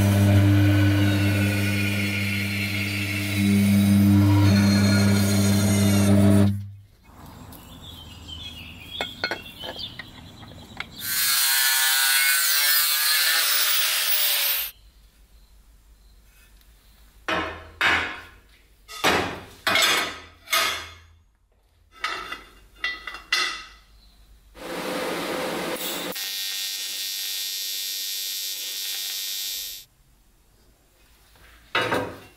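Metal-cutting band saw running and cutting through a steel rectangular tube, a steady machine hum that stops about six and a half seconds in. It is followed by other metalworking tool sounds: a few seconds of a loud high-pitched tool, a run of short separate bursts, and a steady noise near the end that cuts off abruptly.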